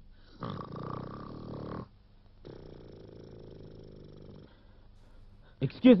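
A man snoring loudly in sleep: two long drawn snores, the first about a second and a half, the second about two seconds.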